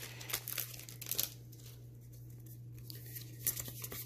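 Foil wrapper of a Magic: The Gathering set booster pack crinkling and tearing as the pack is opened, with a cluster of sharp crackles in the first second or so, then softer handling with a few clicks near the end.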